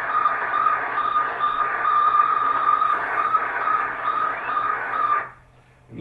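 Recording of Sputnik 1's radio beacon played over loudspeakers: a single-pitch beep repeating rapidly and evenly over a hiss of radio static. It cuts off suddenly near the end.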